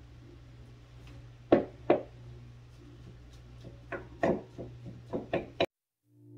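Wooden spoon knocking against a bowl while cooked ground beef is scooped from one bowl into another: two sharp knocks about a second and a half in, then a run of lighter knocks near the end, which cut off suddenly just before the end.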